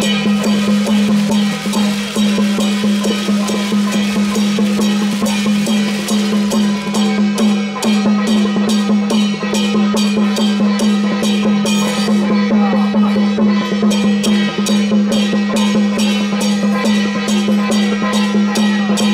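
Temple-procession gong-and-drum band playing a fast, steady beat of drums and cymbals over a continuous low ringing tone, accompanying a martial-arts troupe.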